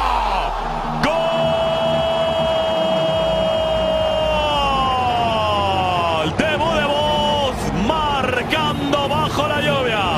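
A football commentator's long drawn-out shout of "gol", held on one pitch for about three and a half seconds and then falling away, followed by more excited shouting over stadium crowd noise.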